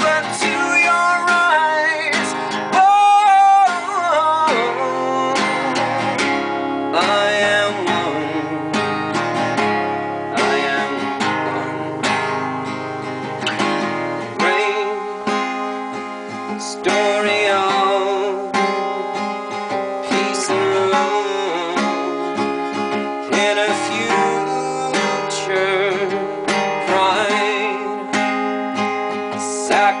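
Acoustic guitar strummed steadily. A few seconds in, a man's voice holds a sung note that wavers in vibrato, then the guitar carries on alone.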